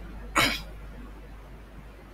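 A man's single short cough about half a second in, loud against a quiet background.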